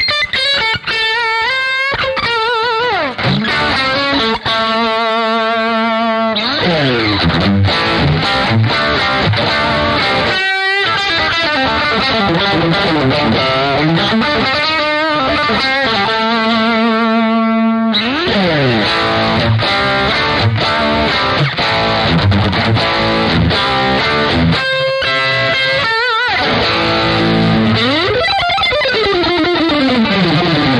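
Overdriven electric guitar: a Fender Stratocaster with DiMarzio pickups played through the Plexi side of a Carl Martin PlexiRanger drive pedal, distorted lead lines with string bends and wide vibrato. There is a brief break in the playing about ten seconds in.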